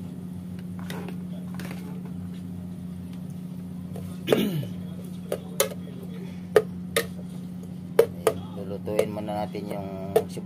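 A metal spoon stirring onions and garlic in a metal pot, scraping and then clinking sharply against the pot's side several times in the second half, over a steady low hum.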